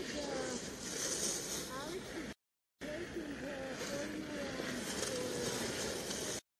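Outdoor ski-race course ambience: a steady rushing hiss with faint, distant voices under it. It cuts out to silence for a moment about two and a half seconds in.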